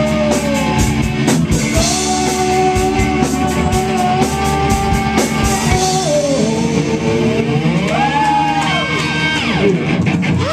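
Live rock band playing with electric guitars and a drum kit. The drum hits stop about six seconds in, leaving held notes that bend up and down in pitch.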